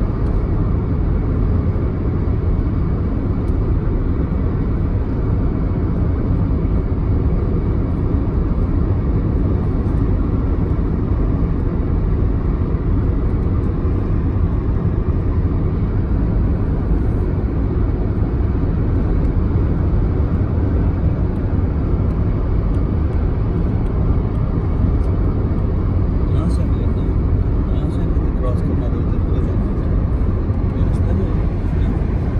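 Steady road and engine noise inside the cabin of a car driving at highway speed, a low, even rumble that doesn't change.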